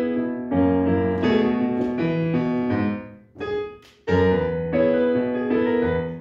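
Digital piano playing full sustained chords, a new chord roughly every half second. The playing breaks off about three seconds in, starts again a second later, and rings out near the end.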